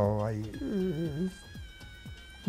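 A man's drawn-out hesitation sound: a held low vowel, then a wavering hum that fades out a little past the middle, leaving faint steady high tones.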